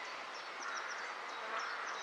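A colony of honeybees buzzing steadily around an opened top bar hive, a calm, even hum rather than a defensive one.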